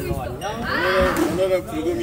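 Raised human voices calling out during play, rising to a loud, drawn-out cry about a second in.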